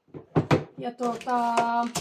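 A few short knocks about half a second in, then a click near the end, as a glass jar and a plastic basket are handled on a cupboard shelf, under a woman's drawn-out speech.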